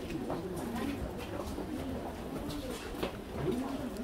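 A bird calling in low, curving notes over a faint murmur of people's voices.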